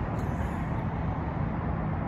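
Steady low rumble of road traffic, with no break or sudden event.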